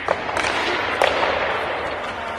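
Three sharp cracks, about a tenth of a second, half a second and a second in, each ringing on in the echo of the ice hall, over a steady hall noise.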